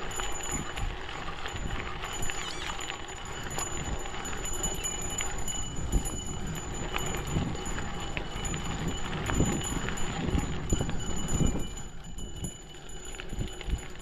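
Gravel bike on 700x40C Panaracer GravelKing X1 tyres rolling over loose gravel, with a constant crunch and rattle of small stones and frame jolts, and rumble from wind on the mic. The sound eases a little near the end.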